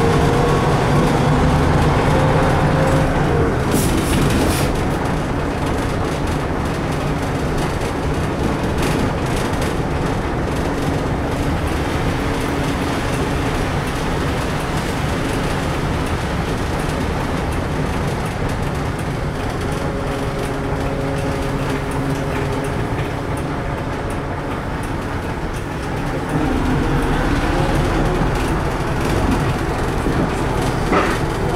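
Cab interior of a LAZ-695T trolleybus under way. An electric traction-motor whine rises in pitch over the first few seconds and returns faintly later. Beneath it runs a steady rumble of body rattle and road noise.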